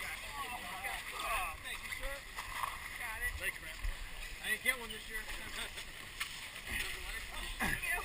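Several voices calling and chattering at once in the background, no words clear, over a low rumble of wind and handling noise on a helmet-mounted camera. Near the end one loud sound slides quickly down in pitch.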